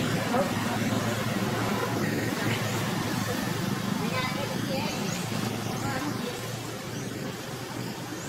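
Outdoor background of people's voices talking indistinctly over a steady low rumble of traffic-like noise.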